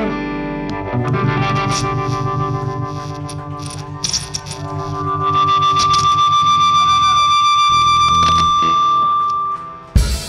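Live rock band playing an instrumental passage, led by distorted electric guitar through effects. A long held high guitar note rings from about halfway through and cuts off suddenly just before the end.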